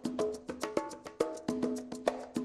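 Background music with a quick percussive beat of sharp wood-block-like clicks over held tones.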